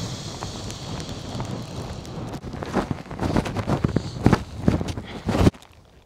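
Strong wind blasting the microphone in gusts, a steady rumbling rush broken by heavier irregular thumps in the second half, cutting off suddenly about five and a half seconds in.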